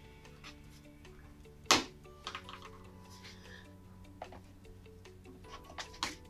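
Soft background music under handling sounds at a mount cutter: one sharp knock just under two seconds in, then light clicks and the rustle of mount board being moved on the machine.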